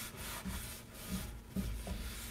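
A paper towel rubbing over the inside of a cast iron skillet in repeated wiping strokes. A few low thuds come through, the loudest about one and a half seconds in.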